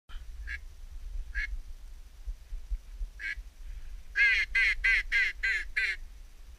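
Duck quacking: a few scattered single quacks, then about four seconds in a loud run of six quacks, about three a second, each dropping in pitch.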